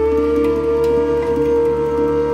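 Electronic new-age world music: one long held flute note over a steady low drone.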